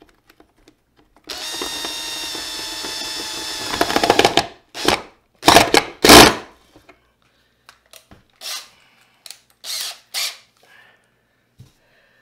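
Cordless drill driving a screw into wood: one steady whirring run of about three seconds that grows louder as the screw bites. Several short trigger bursts follow to seat it, the loudest about six seconds in, then a few fainter short bursts near the end.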